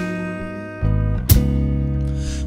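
Small live band playing a slow soul ballad between sung lines: electric guitar and keyboard holding chords over bass guitar, with a single percussion hit about a second in.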